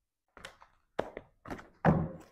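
A few short knocks and thunks of objects being handled on a tabletop, the loudest near the end.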